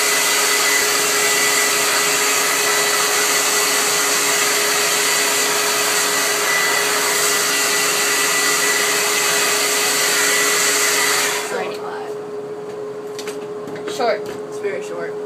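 Handheld hair dryer running steadily on high, a loud rush of air with a constant whine, blowing on wet hair. It switches off abruptly about eleven seconds in, leaving a fainter steady hum.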